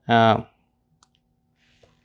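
A man's voice speaks one short syllable at the start, then a pause with a single faint click about a second in, over a faint steady hum.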